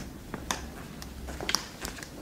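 A few sharp, irregularly spaced clicks or taps, the clearest about half a second in and twice near the end, over a faint low hum.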